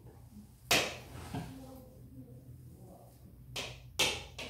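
A whiteboard marker tapping against the whiteboard: one sharp tap about a second in and a fainter one near the end, over a low steady room hum.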